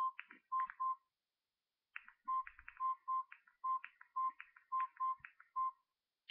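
Samsung E2121B mobile phone keypad tones: a string of about a dozen short beeps, all at one pitch, each with a small click of the key. They come roughly two a second, with a pause of about a second near the start, as the keys are pressed to move through the menus.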